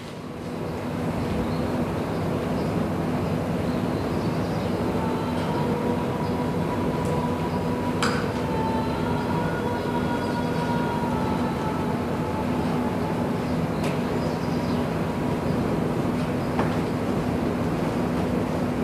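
A steady rumbling noise with a low hum through it, holding level throughout, with a couple of faint clicks.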